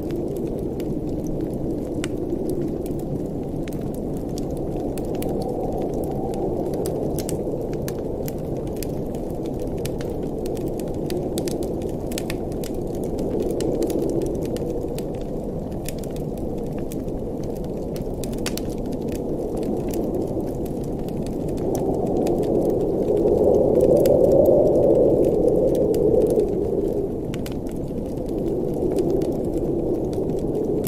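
Wood fire crackling in a fireplace, with sharp pops scattered throughout, over a low rushing blizzard wind that swells louder for a few seconds about two-thirds of the way through.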